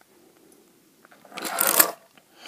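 A brief scraping, rustling noise lasting about half a second, starting a little over a second in: handling noise as the die-cast toy car and the camera are moved against the surface.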